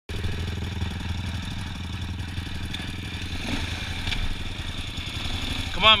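ATV engines idling steadily at close range, the nearest a Yamaha Raptor 350 quad's single-cylinder four-stroke.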